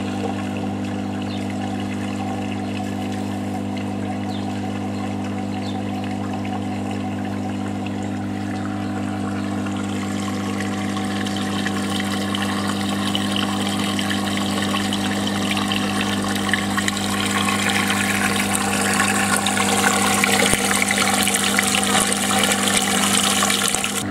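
Steady electric hum of the oil separator plant's pump motor, with oily water running and splashing through the separator tank; the water grows louder over the second half.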